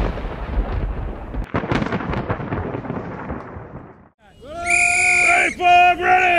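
A thunder-like rumbling sound effect in two rolls, the second fading away over a few seconds. Near the end comes a loud held tone with many overtones, broken once.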